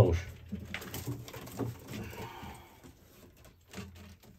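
Domestic pigeons cooing in a loft, a series of low coos that fade toward the end.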